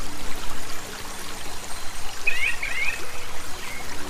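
Steady running water, like a trickling stream. A short run of high chirps comes a little over two seconds in.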